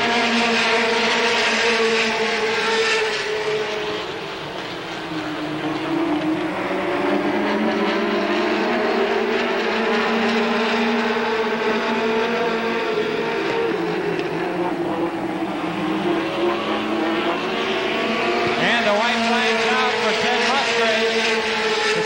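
A pack of late model stock car V8 engines racing at full throttle, their pitch repeatedly dipping and rising as the cars go round the oval.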